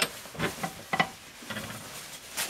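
A few light metallic clicks and taps as the brass parts of a pressure-washer unloader valve are handled and fitted back together.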